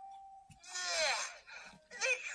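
A cartoon character's voice: a short held hum, then a long, loud vocal groan falling in pitch, a grimace of disgust at the taste of a kelp cake.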